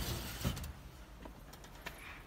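Metal mesh drying tray sliding onto the rack rails of a cabinet food dryer: a short scrape about half a second in, then a few light metallic clicks, the sharpest near the end.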